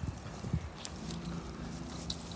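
Footsteps and handling noise of a phone being carried outdoors, with the rustle and clicks of thin branches brushing against it. A low steady hum comes in about a second in.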